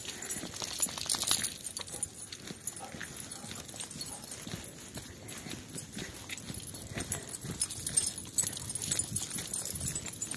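Footsteps and dogs' paws on a gravel trail, an irregular run of small scuffs and clicks, with light jingling from collar tags or leash hardware as two dogs walk on leash.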